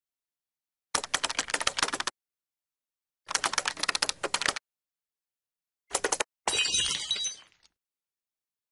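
Computer-keyboard typing sound effect: two runs of rapid clicks a little over a second each, then a short run, as text is typed onto a command-prompt screen. Near the end a noisier crackling burst fades out.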